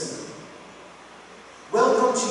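A man's voice preaching: a word trails off at the start, then a pause of about a second and a half, then he speaks again loudly near the end.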